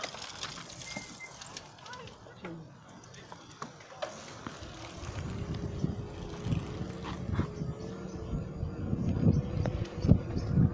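Electric unicycle riding along a tarmac path: low tyre and wind rumble with small knocks from bumps, heavier in the second half. From about halfway a thin steady motor whine joins in, wavering and drifting slightly up in pitch.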